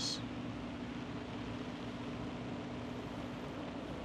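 A steady low mechanical hum under an even background hiss.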